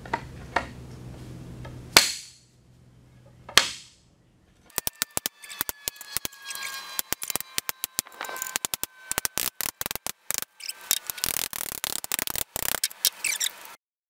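Hammer blows on a homemade dent-pushing rod set in a dented gas filler neck, to push the dent out. A few single heavy strikes ring out first, then comes a fast run of blows with a metallic ring, which cuts off suddenly near the end.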